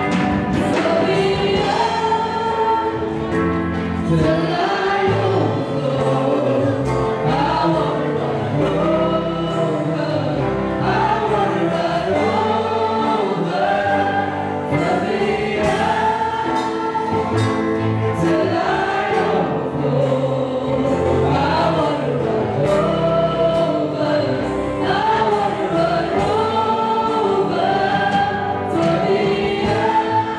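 Live gospel worship song: a woman leads the singing on a microphone with a group of backing singers, over a band with electric guitar, running steadily without a break.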